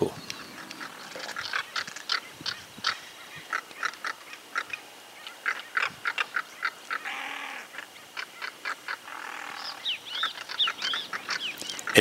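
Birds calling: many short, sharp chirps in quick succession, with a few quick rising-and-falling whistled notes near the end.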